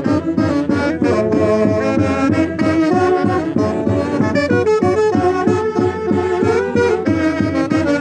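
Two saxophones playing a lively Andean santiago dance tune together, over a steady beat.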